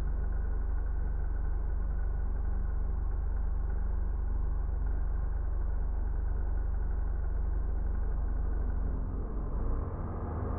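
Steady low rumble of a car on the move: engine and road noise, with most of the sound in the deep bass.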